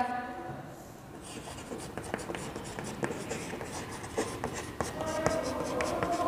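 Chalk scratching and tapping on a blackboard as a line of handwriting is written, in many short strokes from about a second in.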